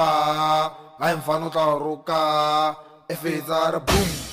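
A lone male vocal in an amapiano DJ mix, chanting three long held notes and then a few shorter syllables with no beat behind it. A drum hit comes in just before the end as the track's beat drops.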